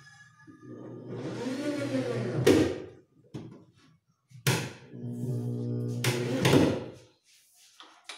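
Cordless drill driving screws into a plywood cabinet frame: two runs of the motor, each about two and a half seconds, the first rising and falling in pitch, the second steadier.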